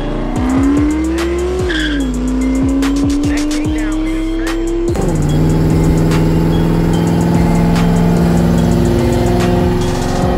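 Turbocharged Ford Mustang V8 accelerating hard, its pitch climbing, dropping at a gear shift about two seconds in, then climbing again. From about halfway it settles into a steady cruising drone.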